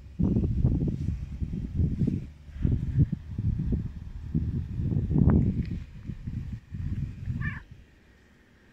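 Silver tabby domestic shorthair cat making short calls, one about five seconds in and a brief broken chirp near the end, over loud, irregular low rumbling noise.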